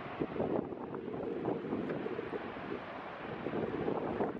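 Wind blowing across the microphone, a steady rushing rumble with no voice.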